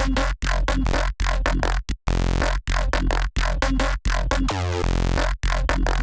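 A looped neurofunk-style synth bass from Ableton's Operator FM synth plays over a deep sub bass, cut into short choppy stabs by abrupt gaps. About four and a half seconds in, a sweeping, vowel-like growl comes through.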